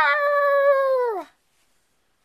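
A girl's voice imitating a dog: one drawn-out call that rises, holds steady and drops away after about a second and a quarter.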